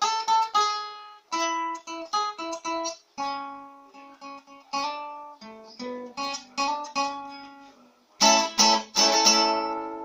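Acoustic guitar played solo: single picked notes and short melodic phrases, each ringing and fading, then louder strummed chords for the last two seconds.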